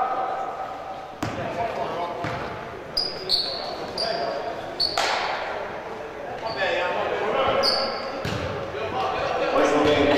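Basketball shoes squeaking on a hardwood gym floor in short high chirps, with a few ball bounces echoing in the large hall.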